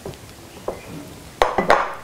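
A glass mixing bowl handled on a wooden chopping board: a couple of light knocks, then a louder clatter and scrape near the end as the bowl is moved off the board.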